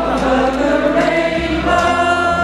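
Live Cuban big-band son music: the orchestra playing, with several voices singing together as a chorus over bass and percussion.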